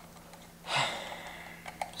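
A short breathy exhale about half a second in, then a couple of faint light clicks near the end as a laptop hard drive is slid out of its bay.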